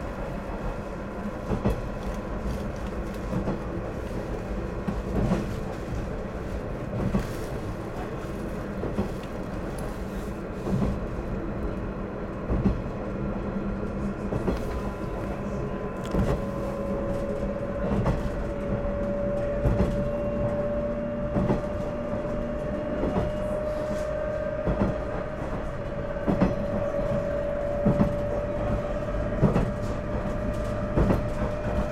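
Running noise heard from inside a KiHa 110 series diesel railcar: a continuous low rumble, with the wheels clicking over rail joints every second or two. About halfway through, a steady whine comes in and rises slightly in pitch.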